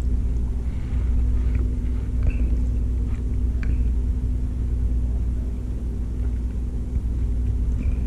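A steady low hum with a constant faint tone above it, and a few faint clicks in the first half.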